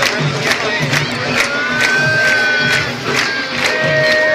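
Candombe drums playing a steady driving beat, with low drum thumps about twice a second under sharp stick strikes. A crowd is shouting over them, with one long held cry in the middle.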